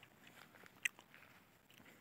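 Faint rustling and crunching of low, flattened crop plants, with one short, sharp click just before a second in.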